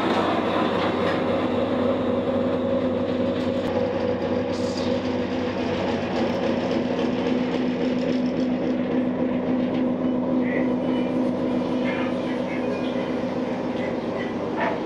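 Steady engine-room machinery drone: an even low rumble with a held hum and a second tone above it that do not change, the sound of diesel engines running in a submarine's engine room.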